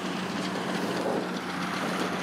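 Kubota DC60 rice combine harvester running steadily at working speed: a constant low hum under an even machine noise.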